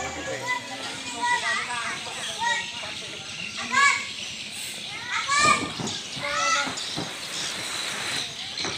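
Children's voices calling and shouting while they play, with several short, high-pitched calls over a low background of chatter.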